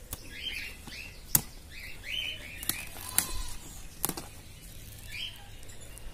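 Small birds chirping in short repeated calls, mixed with about six sharp snaps as purslane stems are broken off by hand; the loudest snap comes about a second and a half in.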